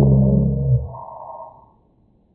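A man's voice slowed far down into one long, deep, drawn-out vocal tone held on a single low pitch, dull with no high end, that breaks off about a second in and fades out soon after.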